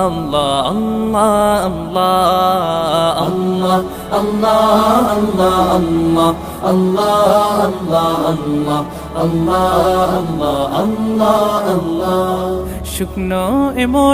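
Chanted vocal music of a Bangla gojol, an Islamic devotional song: a sung melody over a steady low drone.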